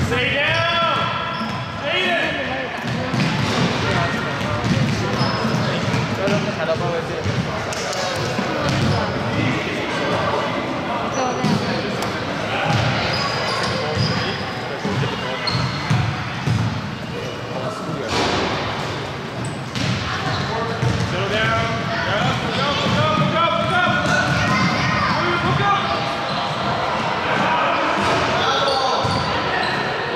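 Basketball dribbled on a hardwood gym floor, with repeated bounces echoing in the large hall while voices call out over the play.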